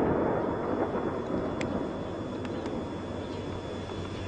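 Rolling rumble of an artillery explosion dying away, loudest at the start and fading over about two seconds into a steady low rumble.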